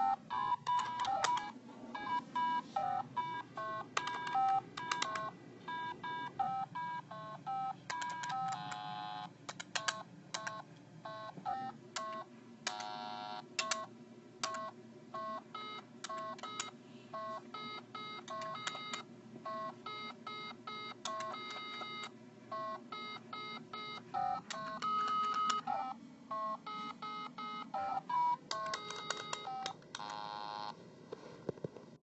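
Simon carabiner keychain game beeping its electronic tones in fast, irregular runs at a few different pitches, the toy having gone crazy.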